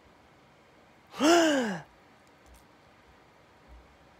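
A man's short voiced sigh about a second in, its pitch rising briefly and then falling away.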